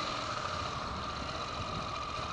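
Honda NC700X motorcycle's parallel-twin engine running steadily at low revs.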